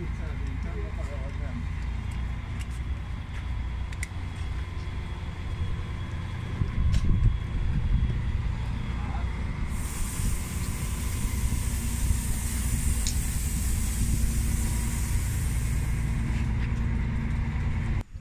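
Stadler Citylink tram-train arriving at the platform, its low steady running rumble with faint steady whines over it, and a long hiss of air starting about ten seconds in and lasting some six seconds. Voices murmur in the background.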